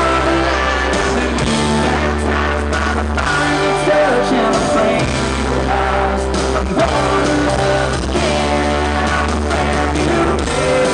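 Live country-rock band playing loud and steady: electric and acoustic guitars over bass and drums, with melodic lead lines on top, heard as an audience recording with rough sound.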